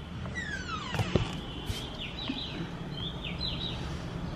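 Birds calling outdoors: a few high falling whistles about a second in, then bursts of quick repeated chirps in the second half.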